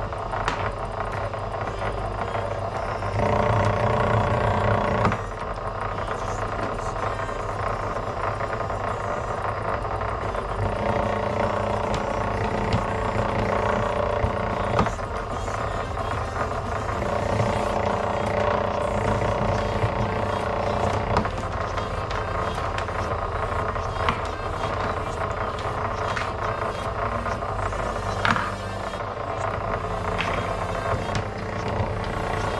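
Electric wire stripping machine running steadily as insulated copper wire is fed through its rollers and blades, with frequent short clicks and rattles from the wire.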